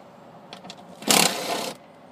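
Small engine-bay hoses being worked loose and pulled off their fittings by hand: a few light clicks, then a brief rough scraping rustle about a second in.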